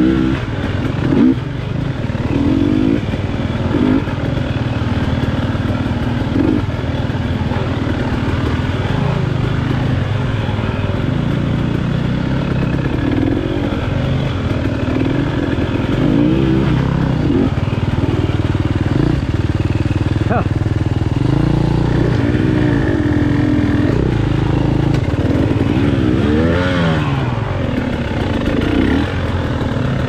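KTM 300 XC-W two-stroke dirt bike engine running at low speed, the throttle worked up and down constantly, with several quick revs that rise and fall.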